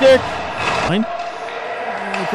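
A man's play-by-play hockey commentary finishing a word, then about a second of steady background noise from the ice rink before he speaks again.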